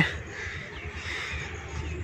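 Quiet outdoor ambience with faint bird calls over a low steady rumble.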